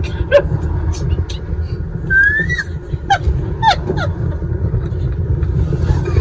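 Two people laughing hard inside a car, with short breathy bursts and a few high squealing whoops that slide down in pitch, over the low steady rumble of the car.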